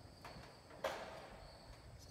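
Quiet background with a faint steady high-pitched tone and one sharp click a little under a second in.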